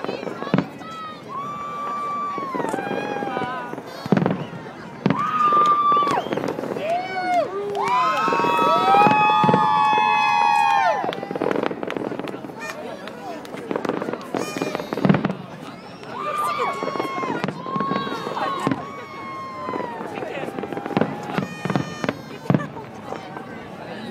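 Aerial fireworks bursting with many sharp bangs and crackles, mixed with long, high-pitched whooping cries from the people watching; both are loudest about a third of the way in.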